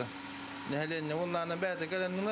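A man's speech, with a steady mechanical hum from running water-treatment equipment underneath that is heard on its own for the first moment before he speaks.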